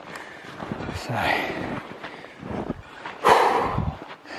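A man breathing hard while hiking through snow, with two heavy exhales: a moderate one about a second in and a louder one a little past three seconds.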